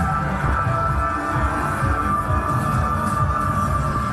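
Music with a steady pulsing bass beat and held synth tones, the soundtrack of a promotional motorcycle video played over loudspeakers.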